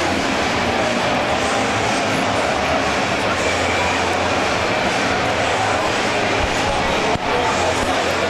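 Indoor ice-rink crowd chatter during a stoppage in play, a steady wash of many voices with a constant low hum underneath.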